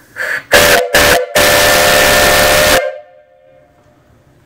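Three-chime brass steam whistle on a live-steam boiler, pulled by its cord: a soft puff, two short blasts, then one long blast of about a second and a half. It sounds a chord over the rush of steam, and the chord hangs on faintly for a moment after the steam cuts off.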